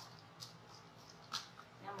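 Faint handling sounds of a ribbon spool being picked up: two brief soft rustles, about half a second and about a second and a half in, over a low steady hum.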